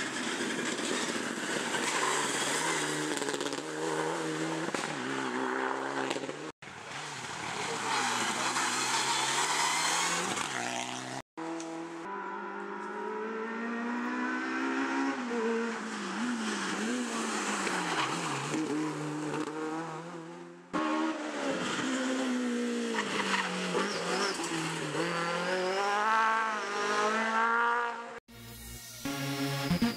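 Rally car engines revving hard on a stage, the pitch climbing and dropping again and again with gear changes and lifts off the throttle. The sound breaks off abruptly three times where separate clips are spliced together.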